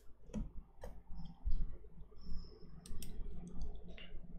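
Clicks of a computer mouse and keyboard: a few single clicks, then a quick run of them about three seconds in, as an update is pulled up on the computer.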